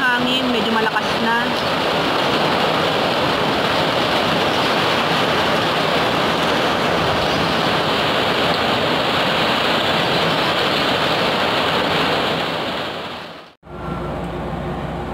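Heavy typhoon rain and strong wind: a loud, steady rushing noise that fades out near the end.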